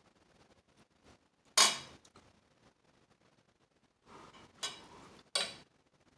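Metal cutlery clinking against the dishes: one loud clink about a second and a half in, then two more close together near the end, with a softer scrape just before them.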